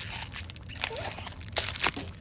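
Foil wrappers of a stack of Magic: The Gathering booster packs crinkling as the packs are lifted and handled, with a couple of sharp crackles near the end.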